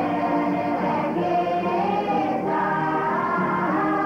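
A group of voices singing together in chorus, holding long notes that move to a new pitch about once a second.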